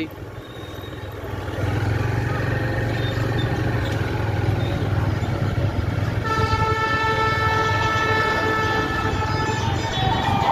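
Motorcycle riding along a road, its engine and road noise running steadily, with a vehicle horn held as one long steady note for about three and a half seconds from about six seconds in.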